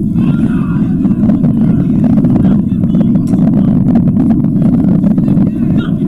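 Steady low wind rumble on the microphone at a football pitch, with players' voices shouting over it.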